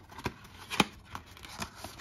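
A small cardboard box being handled and its tuck flap pried open: light papery rustles and scrapes with a few clicks, the sharpest a single snap just under halfway through.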